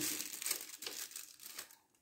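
Crinkling, rustling handling noise that starts suddenly and fades out unevenly over about two seconds, made up of many small crackles.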